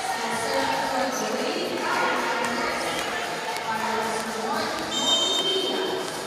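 Indoor arena crowd noise between rallies: many voices chattering and calling in a large, echoing hall. About five seconds in comes a short, steady, high referee's whistle, the signal for the serve.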